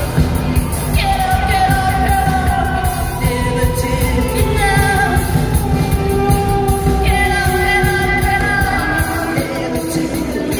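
Live rock band playing, with electric guitar and drums under a woman singing into a microphone. Her voice swoops down into held notes about a second in and again near seven seconds.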